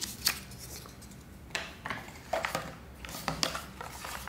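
Cardboard packaging and a small plastic-and-aluminium tripod being handled: scattered light clicks and rustles in short clusters as the cardboard insert comes off and the box is picked up.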